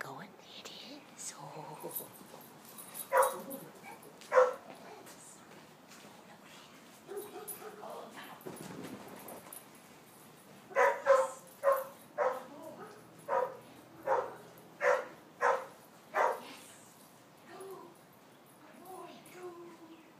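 A small dog barking: two sharp barks about a second apart, then after a pause a run of about nine barks, roughly two a second.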